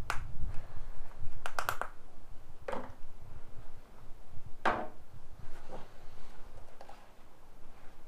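A few brief clicks and rustles of gloved hands handling fibreglass-repair supplies in a cardboard box: a quick cluster of clicks about a second and a half in, then two short scraping rustles, the louder near the middle.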